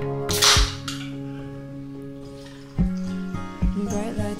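An aluminium drink can's ring-pull cracked open with a short hiss of escaping fizz, about half a second in. Background music plays throughout.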